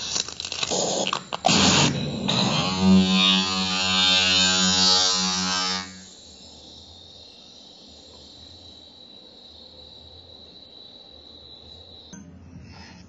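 Electronic sound played live from a Thrustmaster joystick used as a controller: harsh noise bursts, then a steady buzzy tone for about three seconds that cuts off suddenly about six seconds in. A faint hum with a thin high whine remains.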